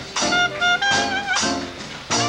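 A small traditional jazz band playing live: clarinets carry the melody over guitar, string bass and drums, with a steady accented beat.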